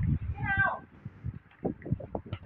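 A short, high cry like a cat's meow about half a second in, falling in pitch at its end, with faint voice sounds after it.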